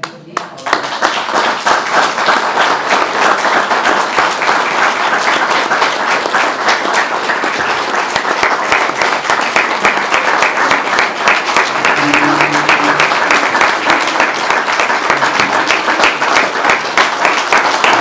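Audience applauding. The clapping starts about half a second in and keeps going steadily.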